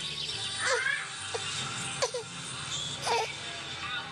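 A baby makes several short squeaky whines and grunts while straining to push up on her arms during tummy time. Faint background music or television runs underneath.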